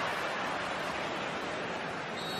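Football stadium crowd noise, a steady even wash of many spectators with no single shout standing out.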